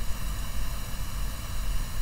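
Steady background room tone: a low hum with an even hiss over it, and no speech.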